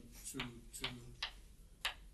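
Chalk tapping and scratching on a blackboard as symbols are written: a series of short, sharp ticks, about five or six in two seconds.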